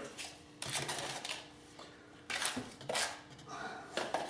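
Wet grout being scraped out of a plastic tub with a small tool and packed into a cordless drill's battery case: a few short, soft scrapes and knocks.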